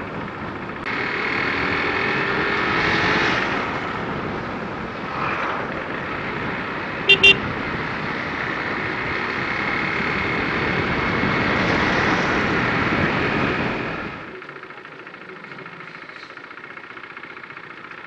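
Motorcycle riding along a road, engine and wind rushing on the microphone, the engine rising in pitch as it speeds up between about one and three seconds in. A horn beeps twice in quick succession about seven seconds in. The noise drops off sharply about four seconds before the end as the bike slows.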